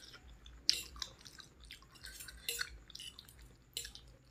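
Close-up eating sounds of a person chewing a mouthful of instant noodles in soup: wet mouth smacks and chewing noises in a string of short, irregular clicks, the sharpest about three-quarters of a second in.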